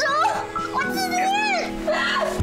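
A man and a woman shouting in strained voices during a struggle, over background music with long held notes.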